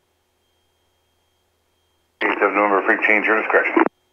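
Near silence on the headset intercom, then about two seconds in, an air traffic controller's voice comes over the aircraft radio, thin and narrow-sounding, answering the request for a frequency change.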